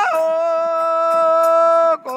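A long held musical note, steady in pitch with rich overtones, entered by a drop from a higher held note and cut off sharply at the end.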